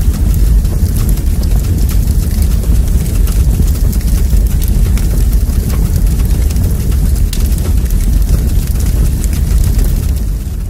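Fire sound effect: a loud, steady low rumble with fine crackling throughout.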